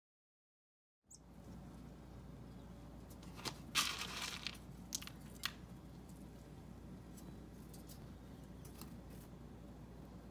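Faint steady low hum starting about a second in, with scattered small crunchy clicks and a short crinkling rustle about four seconds in.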